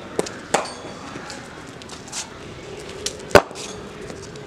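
A few sharp knocks from cricket batting practice: the bat and pads moving through sweep shots. The loudest is a single sharp crack a little over three seconds in, likely the bat striking the ball or the pitch.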